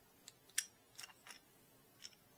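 Four sharp, faint clicks of 3D-printed plastic Voron Clockwork extruder parts being handled and pressed together, the loudest about half a second in.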